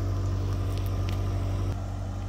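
Tracked skid steer's engine idling steadily, a low even hum that drops slightly in level near the end.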